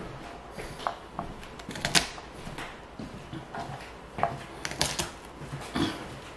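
Kitchen knife roughly dicing garlic: irregular, separate taps and knocks, about one or two a second, the loudest about two seconds in and near the end.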